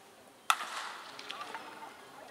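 Wooden baseball bat hitting a pitched ball about half a second in: one sharp crack, the loudest sound, with a short echo trailing after it.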